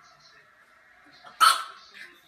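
A small puppy barks once at its own reflection in a mirror, a single short, loud bark about a second and a half in.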